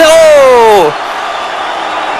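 A man's voice holds one long call that falls in pitch for just under a second, the drawn-out end of a goal call by a football commentator. It gives way to a steady hiss of stadium crowd noise.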